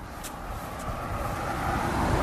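A car approaching on the road, its tyre and road noise growing steadily louder.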